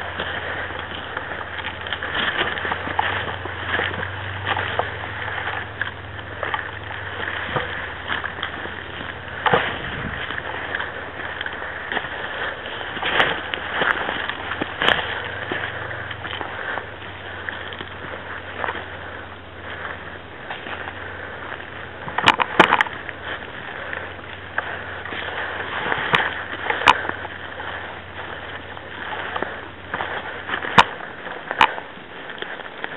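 Rustling and footsteps of a player moving over a dry pine-needle and twig forest floor, picked up by a gun-mounted camera's microphone over a steady low hum, with scattered sharp clicks and snaps throughout.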